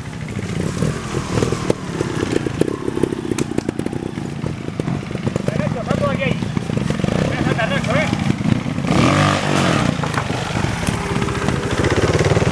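Trials motorcycle engine running at low revs with short throttle blips, as the bike is ridden slowly over obstacles. The revs rise briefly about nine seconds in.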